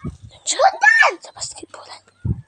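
A person's voice calling out once, its pitch rising and then falling, about half a second in.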